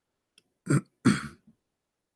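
A man clearing his throat: two short bursts in quick succession about a second in, the second one longer.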